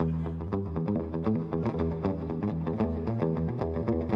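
Custom-built electric guitar played through an amplifier: a quick run of picked notes over ringing low notes, played with a light touch to show how easily it plays.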